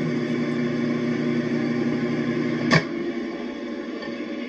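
Microwave oven running with a steady hum. A sharp click comes a little under three seconds in, and the deepest part of the hum stops with it.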